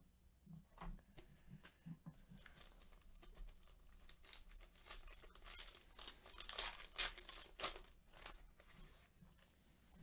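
Foil wrapper of a Panini Donruss Elite football card pack crinkling and tearing as it is opened with gloved hands. The crackles are irregular and loudest a little past the middle.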